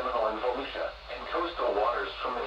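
Speech only: a voice reading out the list of counties in a tornado watch alert.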